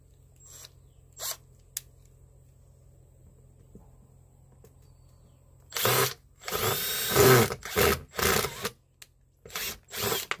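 Cordless impact driver running in several short bursts, starting about six seconds in, as it drives a large screw into plywood to bore a starter hole. Before that there are only a few light clicks.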